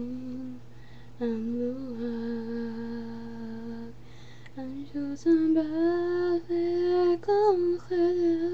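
A young woman singing a Gaelic song solo and unaccompanied, holding long, steady notes with short breaks between phrases, about half a second in and again around four seconds.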